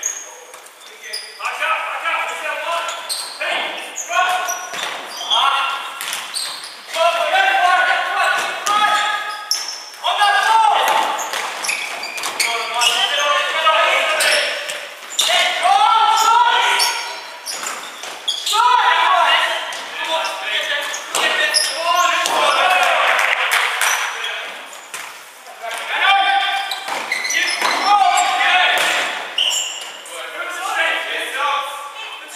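Players' shouts in a large indoor sports hall, with the sharp knocks of a futsal ball being kicked and bouncing on the wooden floor now and then.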